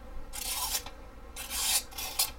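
Carbon-steel pocketknife blade slicing through a thin green sheet in two rasping strokes, the second one shorter. The factory edge is not as sharp as the owner expects.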